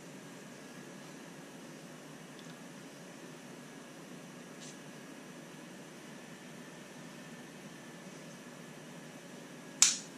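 Small plastic RC-crawler drop-axle parts handled by hand: a few faint ticks over steady room hiss, then one sharp click near the end.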